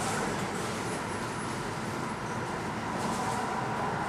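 Jet airliner engines running at taxi power: a steady rush with a faint high whine.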